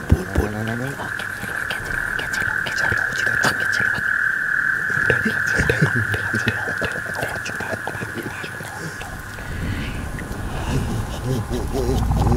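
Eerie sound-design ambience: a steady high-pitched hum with many scattered clicks and crackles over it, fading a little near the end.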